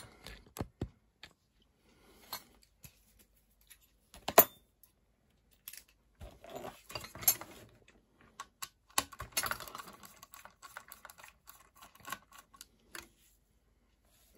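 Small clicks and light scraping of a T8 Torx screwdriver undoing the small screws that hold the fan in an Apple AirPort Extreme router, with one sharp click about four seconds in and short quiet gaps between.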